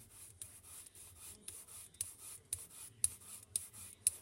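Foam sponge brayer rolling back and forth over card and paper: faint, repeated rubbing strokes with a few sharp clicks.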